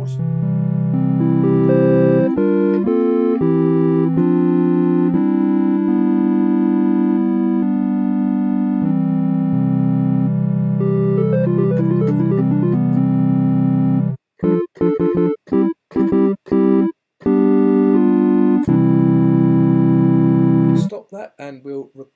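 Sonic Pi's triangle-wave synth (:tri) played live from a MIDI keyboard, loud: long held notes and chords, a quick run of short notes about halfway through, then a string of short, detached chords before more held chords. The playing stops about a second before the end.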